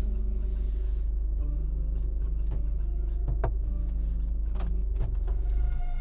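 A parked car's engine idling, a steady low rumble heard from inside the cabin, with a couple of short clicks, the last one about five seconds in as the driver's door is opened.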